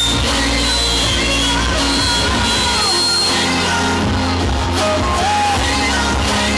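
Pop backing track played through a PA, with a male voice singing live into a handheld microphone over it.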